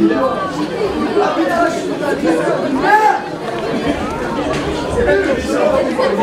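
Several voices chattering at once: spectators talking close to the microphone.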